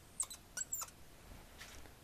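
Marker squeaking and clicking against a clear writing board in a few short strokes, mostly in the first second, with a fainter one near the end.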